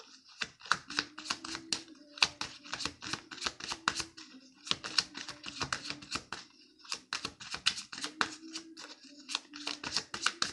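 A deck of tarot cards being shuffled by hand: the cards snap against each other in quick runs of sharp clicks, several a second, with brief pauses between runs.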